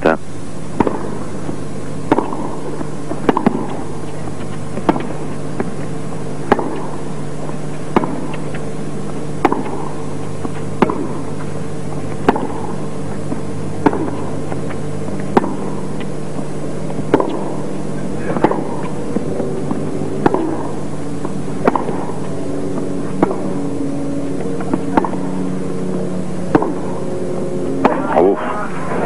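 Tennis rackets striking the ball in a long baseline rally: sharp pops at a steady rhythm, about one every second and a half.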